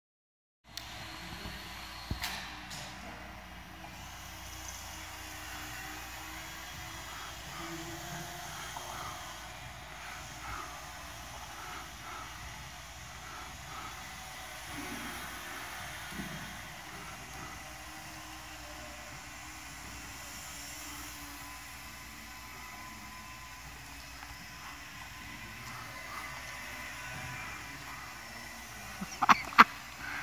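Faint, steady whine of a small electric radio-controlled indoor plane's motor, with two sharp knocks near the end.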